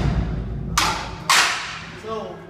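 A marching drumline's last full-ensemble stroke ringing away, followed by two short, sharp percussive accents about half a second apart.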